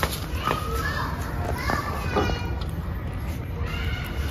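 Children's voices talking in the background, high-pitched and without clear words.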